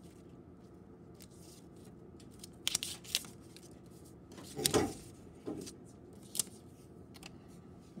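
Paper picture cards being handled on a tabletop: a few short rustles and taps, the loudest about halfway through.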